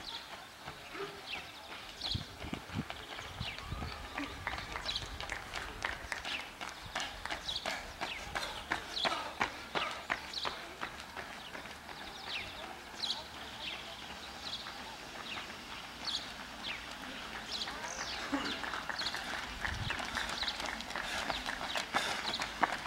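Outdoor street ambience with many short high chirps of small birds throughout and spectators' voices. Runners' footsteps patter on the asphalt, louder near the end as runners come close.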